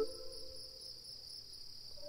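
Crickets chirping, a steady high trill, with the tail of a low flute note dying away at the start.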